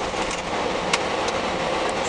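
Steady engine and road noise inside a moving bus, with a faint click about a second in.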